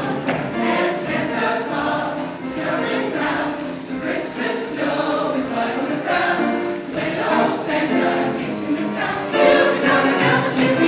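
A mixed-voice show choir singing in harmony, the voices swelling a little near the end.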